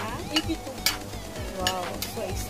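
Kitchenware clinking sharply against a pan of simmering soup on an induction cooker, three times, the last with a short ring, over a steady low hum.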